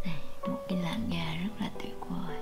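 A woman's soft, indistinct voice over gentle background music with held piano-like notes.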